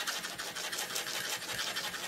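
Paintbrush bristles scratching on parchment paper as acrylic paint is swirled and mixed, a soft steady brushing.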